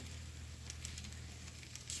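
Model freight train cars rolling along the track: a faint crackling rattle with a few light clicks over a steady low hum.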